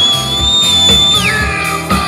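Live rock band playing with electric guitars. Over it a shrill, high whistle is held for about a second, creeping up slightly, then drops away in pitch.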